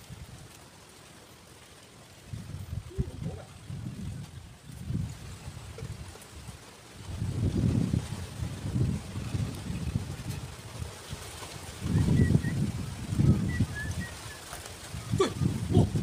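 Wind buffeting the microphone in low rumbling gusts. It is quiet at first, and the gusts come in from a couple of seconds in and grow stronger in the second half.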